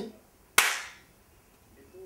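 A single sharp smack about half a second in, dying away quickly with the echo of a reverberant small room.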